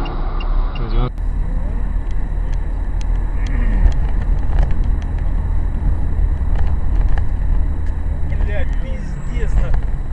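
Steady low road and engine rumble of a moving car, heard from inside the cabin. Brief voices are heard under it in the first second and again near the end.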